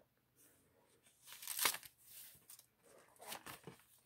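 Pages of a large-print study Bible being turned by hand: a few soft paper rustles, the loudest about a second and a half in.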